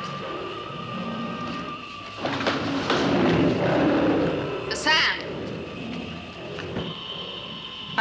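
Dramatic TV soundtrack music with a held high note, then a loud rushing noise for about two and a half seconds. A brief high, wavering cry comes about five seconds in.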